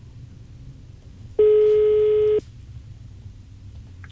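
Telephone ringback tone heard over the phone line: one steady tone about a second long, the ring of an outgoing call not yet answered.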